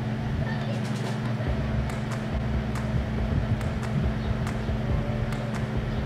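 Steady low hum with faint, irregular soft clicks scattered over it.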